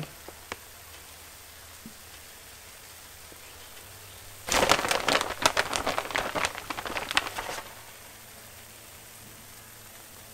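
A burst of dense, irregular crackling and rustling lasting about three seconds, starting a little before the middle: shredded cheese being scooped out of its plastic bag and sprinkled onto burritos on a griddle.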